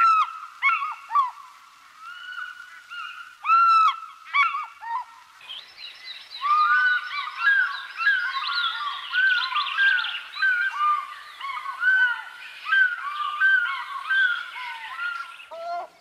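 Many birds calling: short rising-and-falling calls, one louder call about three and a half seconds in, then a dense chorus of overlapping calls from about five seconds on.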